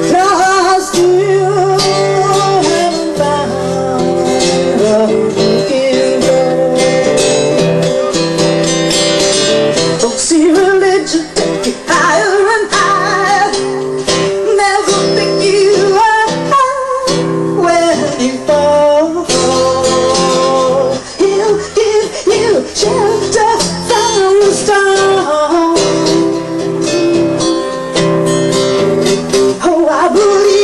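Live amplified song: a woman singing while strumming an acoustic guitar.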